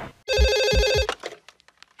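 A landline telephone ringing once, a single fast-trilling ring lasting under a second, followed by a few faint clicks.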